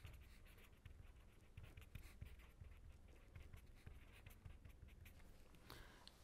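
A pen writing on paper: faint, irregular scratching strokes in quick succession.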